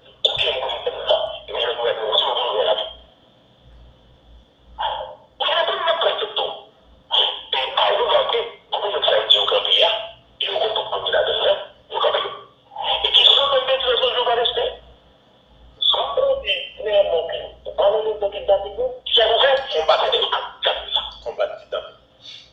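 Speech only: one voice talking in phrases with short pauses, thin and narrow-sounding as if heard over a telephone line.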